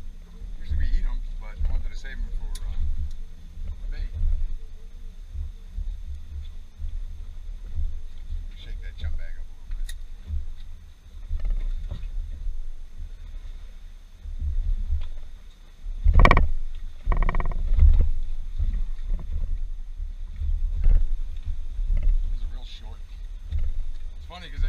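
Wind buffeting the microphone on an open boat: a gusting low rumble throughout, with two louder bursts about two-thirds of the way in.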